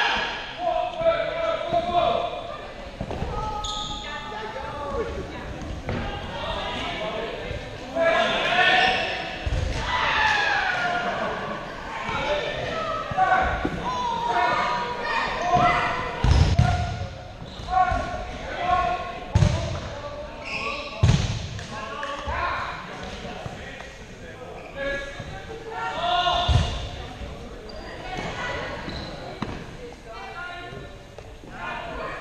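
Rubber dodgeballs bouncing on a wooden gym floor: a handful of separate low thuds that echo in the large hall, with players' voices in the background.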